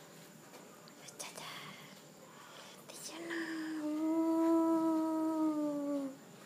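A person humming one long, steady note for about three seconds, starting about halfway in and dipping slightly in pitch at the end. Before it, a quiet stretch with a few faint clicks.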